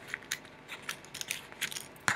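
Hands handling and unfolding a small folded paper note: a scattered run of soft crinkles and clicks.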